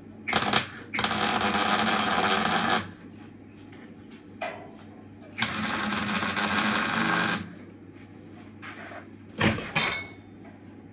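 Electric arc welding steel: two crackling weld runs of about two seconds each, with short tack bursts before, between and near the end, over a steady hum from the welder.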